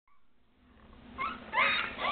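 Young Boston Terrier puppies squeaking: a few short, high, rising whimpers, starting faint about a second in and getting louder near the end.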